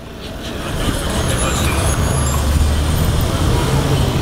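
A motor vehicle engine running close by, low-pitched, growing louder over the first second and then holding steady.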